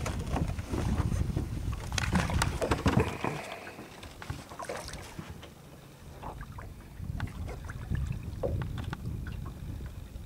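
Knocks and clatter of someone moving about a small boat and leaning over its side, loudest in the first few seconds, over a steady low rumble of wind on the microphone and water against the hull.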